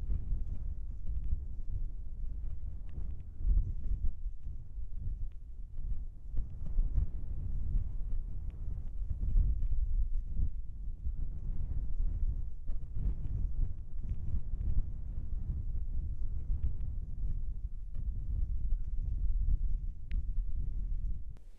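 Wind buffeting the microphone in gusts: a low rumble that swells and drops unevenly.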